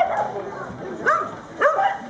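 Border collie barking: two short, sharp barks a little over a second in, about half a second apart.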